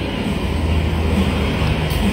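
A motor vehicle engine running with a steady low rumble, a little stronger from about half a second in.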